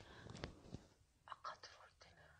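Near silence, with a few faint, soft voice sounds and light clicks.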